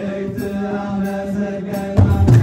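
Ethiopian Orthodox clergy chanting a mezmur (hymn) together, holding long steady notes.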